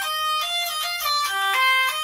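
Hurdy-gurdy playing an instrumental melody: a quick run of short, distinct notes stepping up and down in pitch.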